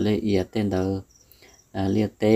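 A man's voice in short, evenly pitched bursts of about half a second: two bursts, then a gap, then a third starting near the end.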